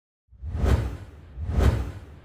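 Two whoosh sound effects of an animated logo sting, about a second apart, each swelling and fading with a deep rumble underneath.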